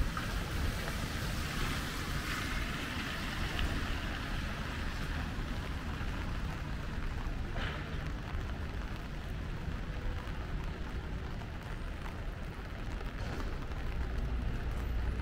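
Steady hiss of rain falling on wet pavement over a low, continuous rumble of city traffic.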